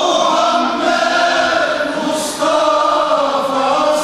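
Male choir singing an ilahi, a Turkish Islamic hymn, in long held phrases, with a short break between phrases a little after two seconds in.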